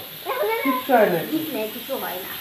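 Excited voices crying out in short calls that glide up and down in pitch, without clear words.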